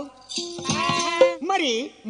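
A burrakatha performer's voice, after a brief pause, sings a drawn-out phrase with a quivering, wavering pitch that ends in a falling glide.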